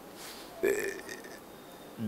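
A man's short hesitant "uh" about half a second in, then quiet room tone.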